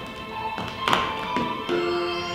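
Tap shoes striking a wooden stage floor, a few sharp taps with the loudest about a second in, over recorded music holding sustained notes.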